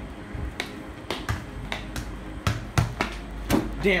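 A ball bouncing and being tapped about on a hard tiled floor: a series of irregular sharp knocks, some close together in pairs.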